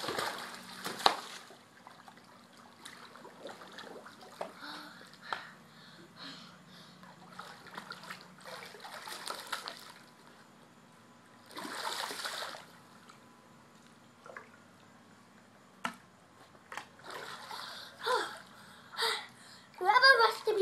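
Pool water splashing as a swimmer in a mermaid-tail monofin kicks along the surface. The splashes come in separate bursts, about a second in, around nine and twelve seconds, and several near the end.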